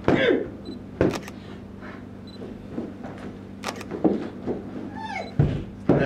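Irregular thumps and knocks on a wooden stage as a performer moves off behind folding screens, about five in all and spread unevenly, over a steady low hum.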